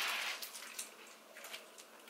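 A short rush of noise at the start, then faint crinkles and small crunches as a Kit Kat wafer bar, still half in its wrapper, is handled and bitten.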